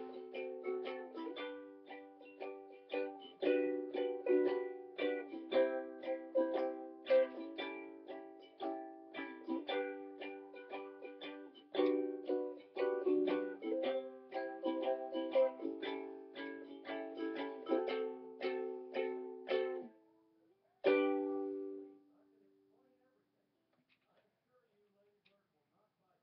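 Solo ukulele playing the instrumental close of a song, then a short break and one last chord that rings out and dies away, followed by near silence.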